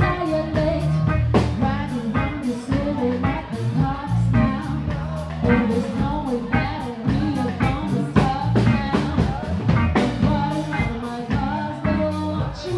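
Live band playing a laid-back R&B groove: a Stratocaster-style electric guitar, bass guitar and drum kit, with regular drum hits throughout.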